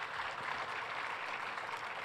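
Faint, steady applause from a convention hall audience: a steady patter of scattered clapping.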